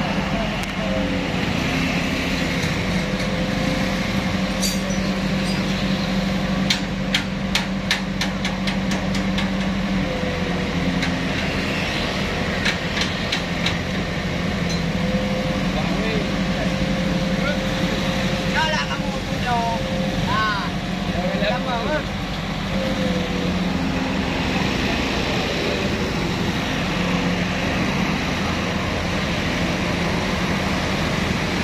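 Flatbed crane truck's engine running steadily to power its loading crane, with two runs of quick clicks, about five a second, in the first half.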